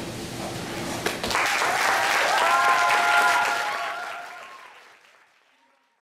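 Audience applauding and cheering, starting about a second in after a single click, then fading out over the last two seconds.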